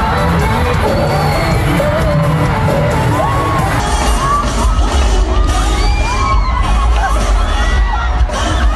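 Live concert heard through a phone recording: loud music with heavy bass under a crowd cheering and screaming. The sound changes about four seconds in, where it switches to a second concert recording.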